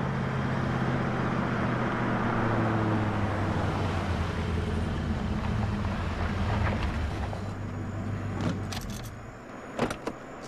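Car engine running with a steady low hum and road noise, dying away about nine seconds in, with a couple of sharp clicks near the end.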